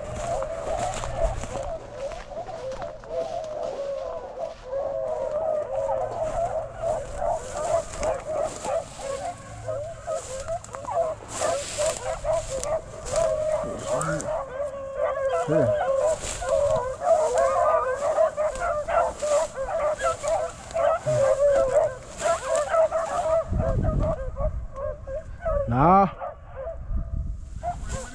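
A pack of beagles baying together on a rabbit's trail: many overlapping, wavering voices in a continuous chorus. Dry grass rustles and crackles against the microphone as the hunter wades through it.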